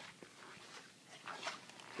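Quiet room tone with faint footsteps and rustling of handling noise while walking, and a small click near the start.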